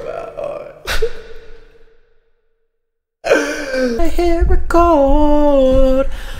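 A voice singing long, wavering held notes in an improvised song. Before it, a sharp strike about a second in leaves a ringing tone that fades, followed by about a second of silence.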